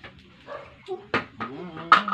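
A few sharp knocks or clicks, the loudest near the end, with a drawn-out, wavering non-word vocal sound starting in the second half.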